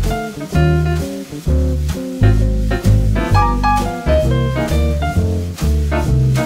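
Background instrumental music in a jazzy swing style, with a strong bass note on a steady beat about twice a second under a melody.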